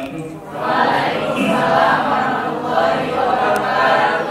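A group of voices reciting together in unison.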